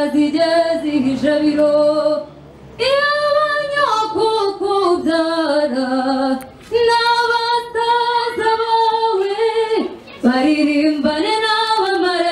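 A woman singing solo into a handheld microphone, holding long notes. The song comes in four phrases broken by short pauses for breath.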